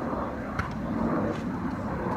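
Steady low rumble of outdoor background noise, with a faint short tap about half a second in.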